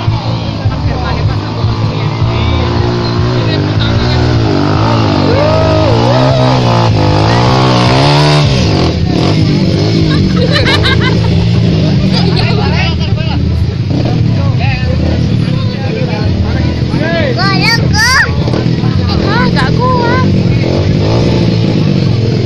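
Trail motorcycle engine revving in deep mud on a climb, its pitch rising and falling repeatedly in the first half. A crowd of people shouts over it, more so near the end.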